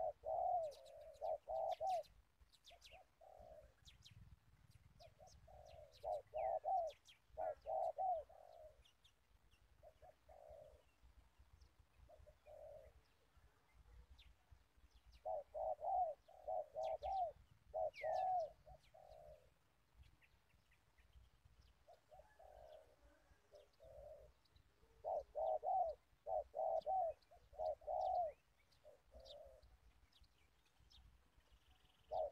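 A dove cooing in bouts of several quick coos, four bouts in all, with thin chirps of other small birds in the background.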